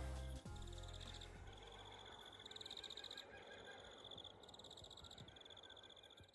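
Background music ends just after the start, leaving a faint night chorus: a high, rapidly pulsed trill from a calling animal, repeated in bouts of about a second, one after another.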